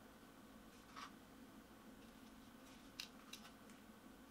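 Near silence with a few faint handling clicks from a Canon EOS R6 camera body turned in the hands: one about a second in, then a small cluster of three or four near the end, over low room tone.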